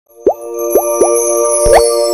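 Short logo-sting jingle: three quick rising bubble-like pops, then a longer upward glide, over a held chord.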